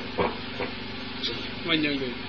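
A short pause in a man's amplified speech: a steady hiss with a faint hum, broken by a brief vocal sound just after the start and another near the end.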